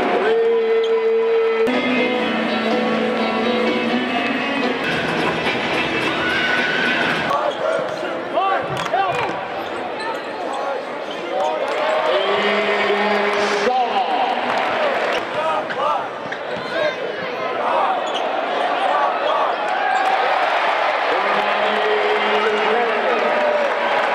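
Live basketball game sound in an arena: the ball being dribbled on the hardwood floor, short sneaker squeaks, and crowd voices, with music playing over the arena's sound system.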